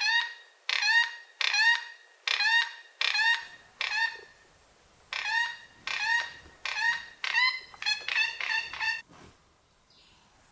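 Plate-billed mountain-toucan calling: a series of about fourteen loud, pitched calls, each rising slightly in pitch, repeated one to two a second and coming faster toward the end, stopping about nine seconds in.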